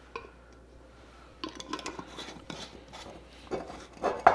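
Metal two-piece canning lid being put on a glass mason jar and its screw band twisted down: light clinks of metal on glass and a faint scraping of the threads, with a louder clink near the end.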